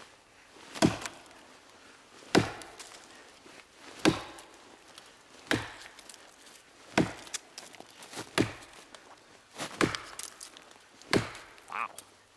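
A 19½-inch Wetterlings Backcountry Axe chopping into a log, eight strokes in a steady rhythm about a second and a half apart, each a sharp chop of the blade biting into the wood.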